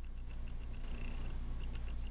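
A low, steady hum with a few faint, light ticks.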